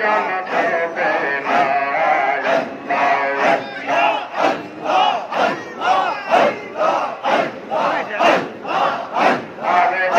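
A large crowd of men chanting zikir (Sufi dhikr) together, with a loud, rhythmic pulse of about two beats a second.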